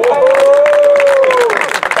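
A small group clapping by hand, with one voice holding a long cheering call over the applause that tails off about a second and a half in.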